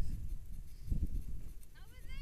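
Wind rumbling on an action-camera microphone, with footsteps through grass. Near the end comes a short, high, voice-like call.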